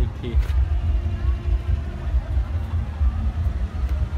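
A low, uneven rumble of wind buffeting the microphone. A word is spoken at the very start.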